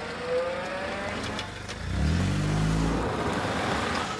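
A car engine as the car pulls up and slows to a stop. About two seconds in, its note falls in pitch as it comes to a halt.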